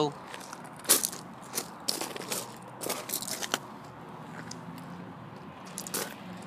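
Footsteps crunching on loose gravel: a string of irregular crunches over the first three and a half seconds, then quieter.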